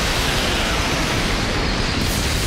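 Loud, steady rushing noise from an animated fight scene's sound effects, even throughout with no distinct hits.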